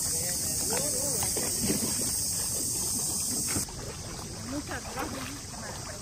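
Steady, high-pitched insect drone with faint voices in the background; the drone cuts off abruptly a little over halfway through.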